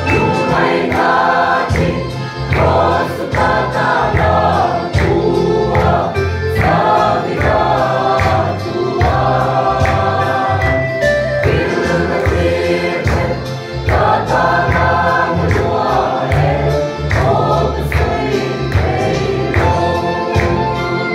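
Mixed choir of women's and men's voices singing a Mizo gospel hymn in parts, held notes changing every second or so, over a steady beat.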